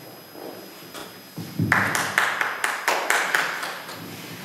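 Brief applause from a few people at a table, starting a little under two seconds in as a quick run of hand claps and dying away near the end.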